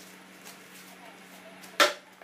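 Plastic packaging handled, with one sharp snap near the end.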